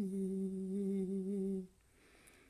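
A woman humming one long, steady note with her lips closed, the last note of an unaccompanied song. It stops about a second and a half in.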